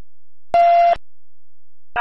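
A single short, steady beep from a police radio channel, about half a second in and lasting under half a second.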